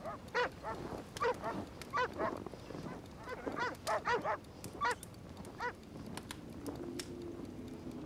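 Dogs barking in short, repeated barks, several a second at times, with a faint steady low hum in the last second or so.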